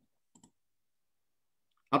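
Near silence with one faint, brief click about half a second in, then a man's voice starts up near the end.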